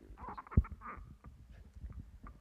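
Handheld microphone being handled and passed from hand to hand: a run of soft knocks and rustles, with one louder thump just over half a second in.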